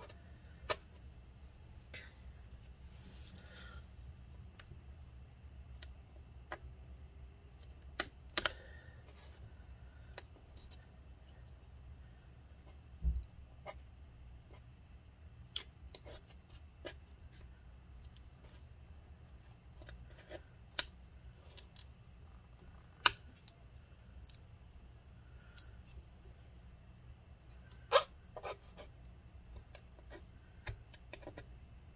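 Scattered sharp clicks and scrapes of a blue plastic pry tool working glued battery cells and adhesive loose from the aluminium top case of a 15-inch Retina MacBook Pro, with a few louder clicks among them. A low steady hum runs underneath.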